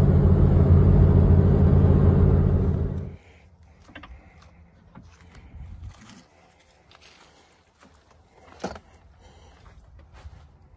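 Steady road and engine noise inside a car's cabin at highway speed, which cuts off abruptly about three seconds in. Then faint footsteps and rustling in dry leaves and grass, with one sharper click a little before the end.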